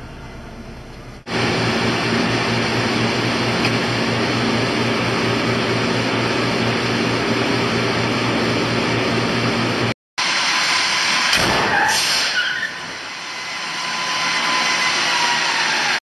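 A steady mechanical hum with a low droning tone that starts suddenly and runs for about nine seconds, then breaks off; after a short gap comes a noisier stretch with a falling whine.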